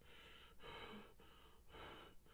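Faint breathing of a man who is crying: about four short breaths in quick succession.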